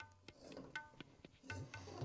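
Faint background music of tabla: sharp ringing strokes in a steady rhythm over low drum tones that bend in pitch.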